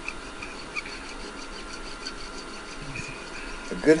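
Hacksaw cutting through a length of white PVC pipe, a run of quiet, even saw strokes.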